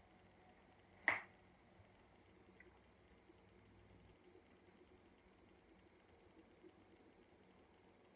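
Near silence with faint sizzling of butter on a heating Nostalgia MyMini Griddle, and one short squeak about a second in.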